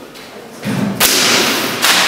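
A sharp thud about halfway through, followed by a loud noisy rush lasting almost a second and another knock near the end.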